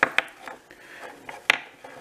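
Steel bolt knocking and clicking against a wooden workbench as it is handled, with a few sharp taps, the loudest about a second and a half in, and faint handling noise between.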